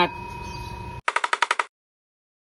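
Faint room noise, then an abrupt cut to a quick rattle of about seven sharp clicks in half a second: an animated outro sound effect.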